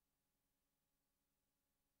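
Digital silence: only a faint residual noise floor, with no sound events.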